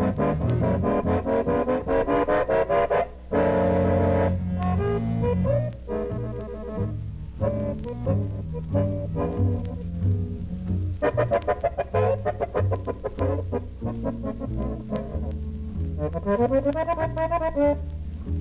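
Live small-group jazz: an accordion-led quartet with guitar, flute and bass playing held chords and melodic runs over a steady bass line.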